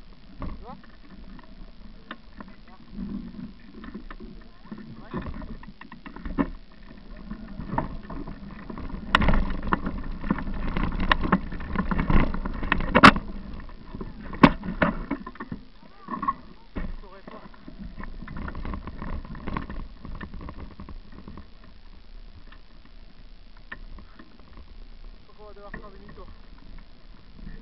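Bicycle riding over a bumpy woodland dirt trail: a steady rumble with rattling and knocking from the bike and its camera mount, the jolts heaviest and loudest in the middle of the stretch.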